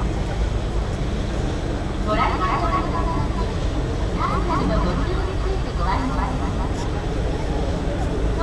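People talking in short bursts over a steady low outdoor rumble.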